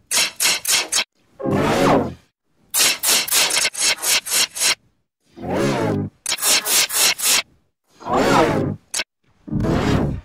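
Heavily processed logo-jingle audio effects: short pitched sounds that bend in pitch alternate with runs of rapid sharp noisy pulses, about five a second, with brief silences between.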